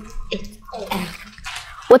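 Girls giggling softly, with a rustle of crumpled paper being handled.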